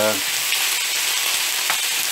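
Onion, tomato and yellow pepper slices sizzling steadily in hot oil in a frying pan as a wooden spoon stirs them.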